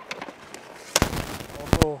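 Ice-hockey goalie's skates scraping across rink ice during a butterfly slide to the post, with two sharp cracks of hard hockey impacts, one about a second in and one near the end.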